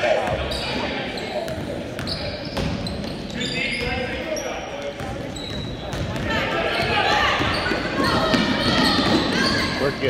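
Youth basketball game on a hardwood gym floor: a basketball bouncing as it is dribbled, short high squeaks of sneakers, and a hubbub of players' and spectators' voices echoing in the hall, which grows louder and busier about halfway through.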